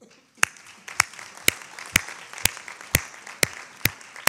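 Audience applause, with one person's hands clapping close to the microphone: sharp, loud claps at an even pace of about two per second, standing out over the softer clapping of the room.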